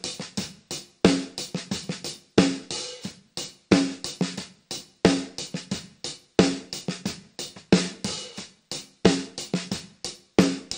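Recorded snare drum playing back from its top and bottom close mics. A strong backbeat hit comes about every 1.3 s, each with a ringing body tone and a bright crack, and quieter ghost-note hits fall in between. The bottom snare mic is being phase- and time-aligned to the top mic by Auto-Align.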